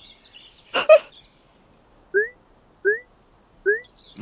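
Three short, identical rising chirps, evenly spaced about three-quarters of a second apart: a cartoon bird- or cricket-like sound effect. A brief vocal sound comes just before them, about a second in.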